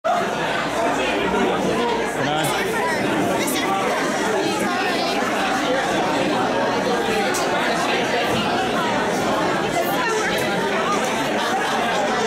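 Crowd chatter: many people talking at once, a steady babble of overlapping voices with no single voice standing out.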